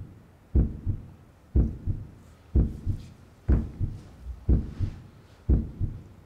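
Heartbeat sound effect: a low double thump, a strong beat followed by a weaker one, repeating regularly about once a second.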